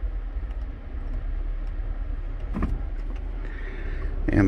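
Steady low hum of a 2015 Audi Q5 idling, heard from inside the cabin.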